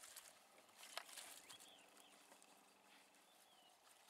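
Near silence: faint outdoor ambience with a few soft clicks, the sharpest about a second in, and faint brief high chirps in the middle.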